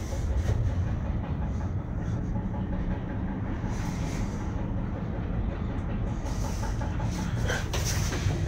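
Steady low rumble with a faint hiss inside a moving cable-car gondola as it travels along the cable.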